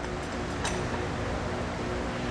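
Steady hum of a garage fan and room noise, with a faint low rumble as the aluminium hitch-mounted bike rack is rocked by hand. There is no rattle from the hitch connection, which its tightened stabilising knob holds firm; one faint click comes about two thirds of a second in.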